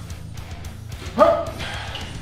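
A man's short strained cry of effort about a second in, as he fights through the last pull-up rep, over steady background music.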